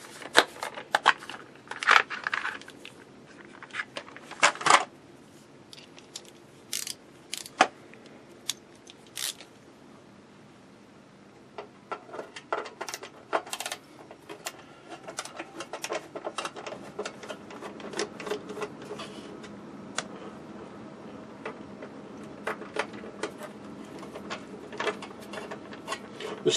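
Sharp clicks and rattles of a plastic screwdriver-bit case being handled and bits picked out, then, from about twelve seconds in, a denser run of small clicks and scrapes as small screws in the front of the television cabinet are worked with a screwdriver.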